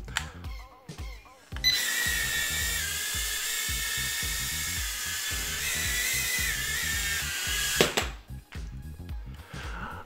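Mini quadcopter's tiny motors and propellers spinning up and running steadily with a high-pitched whine for about six seconds, the pitch shifting slightly a few times, then cutting off. Soft background music runs underneath.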